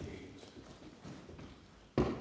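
Faint, irregular knocks and shuffling of people standing up from chairs and moving at wooden desks in a large chamber, ending with one sharp knock.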